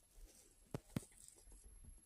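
Near silence broken by two soft clicks about a second in, a fraction of a second apart.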